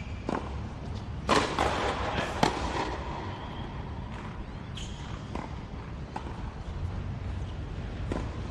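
Tennis rally: racquets striking the ball, heard as a series of sharp pops, the loudest just over a second in and again about a second later, with fainter hits and bounces further on.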